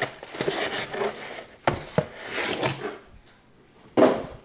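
Cardboard box flaps and plastic packaging rustling as a parcel is unpacked by hand, with two sharp knocks about a second and a half in, a third of a second apart. Near the end it goes quiet.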